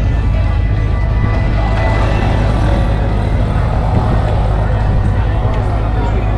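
Steady low rumble under the indistinct chatter of people standing around outdoors.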